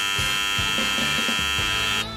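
A loud, steady electronic buzz at one fixed pitch, held for about two seconds and then cut off suddenly, like a buzzer sound effect.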